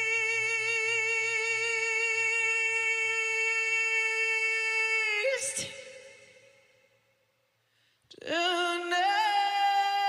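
A male rock vocalist holds one long sung note with vibrato, no instruments heard, and breaks off about five seconds in with a brief rough noise. After about two seconds of near silence, a second long note starts, higher and wavering.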